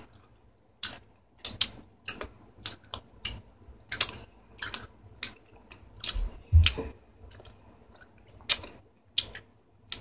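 Hard sour gumballs being chewed: irregular sharp clicks and cracks, about one or two a second, with a dull thump a little past the middle.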